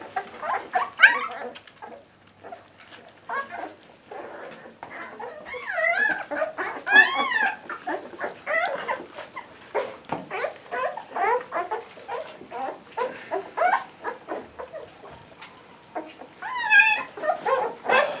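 Leonberger puppies eating minced tripe from a steel bowl: quick wet chewing and smacking clicks throughout, with high, wavering puppy whines about a third of the way in and again near the end.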